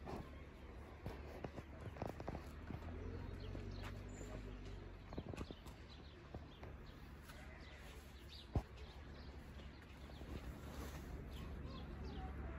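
Small hands scooping and patting damp sand onto a metal shovel blade: scattered soft scrapes and taps, with one sharp knock about two-thirds of the way through, over a steady low rumble.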